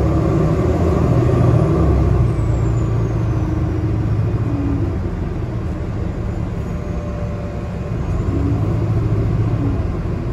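Cabin noise of a Nova Bus LFS city bus under way: a steady low engine and road drone, a little louder over the first couple of seconds.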